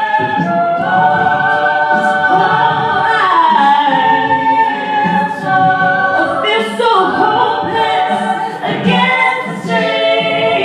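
Mixed-voice a cappella group singing sustained chords, with a lead singer at the front over the backing voices; the harmony glides to new chords a few times.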